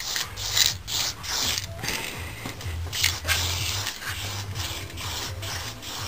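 Paintbrush strokes on the bare metal frame of a Puch Maxi moped: irregular scratchy rubbing, roughly one or two strokes a second, as paint is brushed on.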